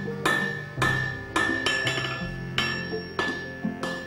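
Blacksmith's hammer striking red-hot iron on an anvil, six or seven blows at uneven intervals of roughly half a second, each leaving a bright metallic ring, with background music underneath.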